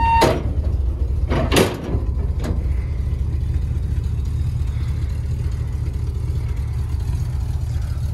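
1974 Ford F-250 engine idling with a steady low rumble. A couple of sharp knocks come in the first two seconds.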